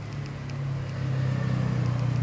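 A motor vehicle engine running with a low, steady hum that grows louder about halfway through.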